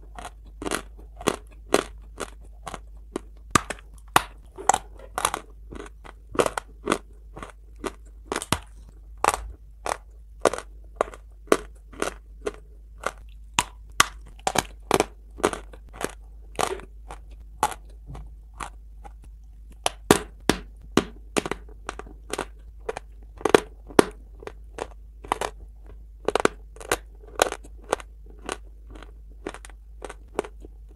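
Close-up bites and chewing of a chunk of dry Turkestan clay: repeated sharp crunches, one or two a second, with a pause of a couple of seconds past the middle.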